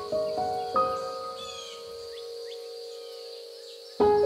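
Soft, slow piano music: a few notes, then a chord struck about a second in that is left to ring and fade away. Faint bird chirps and whistles are layered over it.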